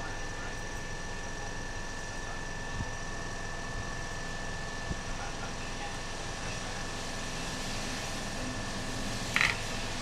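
Steady background hum with a faint, high, steady whine running through it, and a couple of light taps. A brief rustling noise comes near the end.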